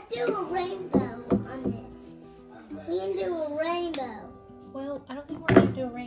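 A television playing in the background: music with voices talking, one of them a child's high voice. A few sharp knocks come through, the loudest about five and a half seconds in.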